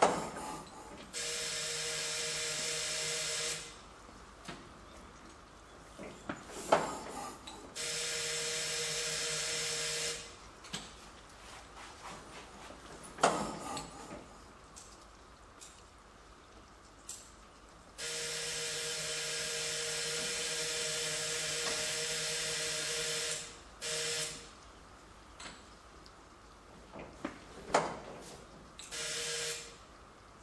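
A vintage fire engine's starter cranking its engine in repeated bursts, two of about two and a half seconds, one of about five seconds and two short ones near the end, with no sign of the engine firing. Sharp clunks come between the bursts.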